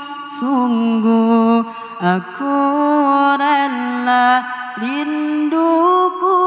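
A solo vocalist singing a slow, unaccompanied melismatic line in long held notes with vibrato and sliding pitch changes, without drums.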